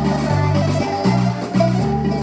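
Recorded music with a strong bass line stepping from note to note, played through a Borneo BSP-215 passive speaker with twin 15-inch woofers during a playback test.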